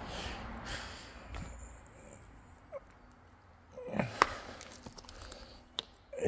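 Soft handling and breathing noise as a person reaches among loose rocks, with a few light clicks and knocks, the clearest about four seconds in and just before the end.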